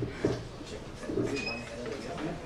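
Microphone handling noise: a sharp knock about a quarter second in as the microphone is moved on its stand and taken in hand, followed by low murmuring sounds.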